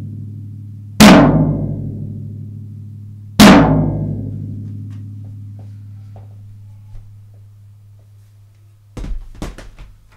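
Floor tom struck hard with a drumstick twice, about two and a half seconds apart, each hit ringing out with a low, slowly fading tone. These are hard-velocity hits played for drum samples. A few light clicks and knocks come near the end.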